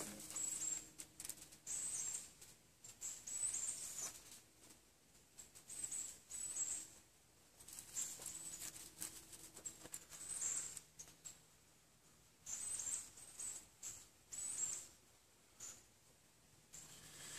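Dry pine needles rustling and crackling as they are crumpled and worked by hand into a tinder bundle, in short bursts every second or two.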